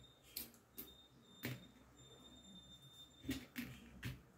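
Faint handling sounds of fingers folding a strip of ribbon on a cloth-covered table: a few short clicks and rustles, scattered and spaced apart.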